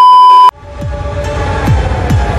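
A loud, steady test-pattern beep that cuts off suddenly half a second in. Electronic dance music follows, with deep bass hits that each slide down in pitch.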